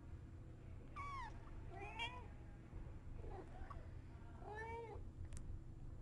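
Newborn kitten mewing: about four faint, high-pitched mews roughly a second apart, each bending in pitch.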